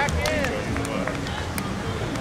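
Voices of volleyball players calling out to each other, with a few sharp taps of the ball being played, the loudest about one and a half seconds in.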